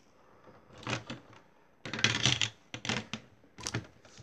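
Plastic Lego models being handled and set down on a plastic baseplate: a run of clicks and clatters, loudest in a dense cluster about two seconds in.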